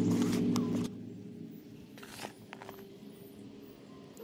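A steady low drone stops abruptly about a second in. After it, a bare hand rakes through damp leaf-mould worm bedding in a plastic tray, with faint rustles and small scrapes and clicks.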